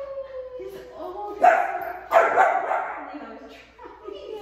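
A puppy at play, whining on a slowly falling pitch that fades about a second in, then giving two loud barks about three quarters of a second apart.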